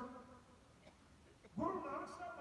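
A man's voice over a microphone trails off at the start, a pause of about a second and a half with only faint background follows, and the voice comes back loudly near the end.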